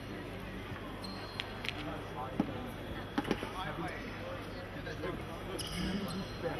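Ambience of a large sports hall during a fencing bout: murmured voices with a few sharp knocks and thuds in the middle.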